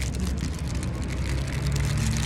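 Phone being handled close to its microphone, a sleeve or skin brushing over it with dense crackling rubs, over a steady low mechanical hum.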